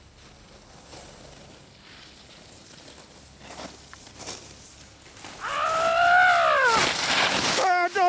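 A long drawn-out yell, held steady for over a second and then falling in pitch, followed by a short loud hiss of skis scraping across packed snow as a skier skids to a stop right at the camera.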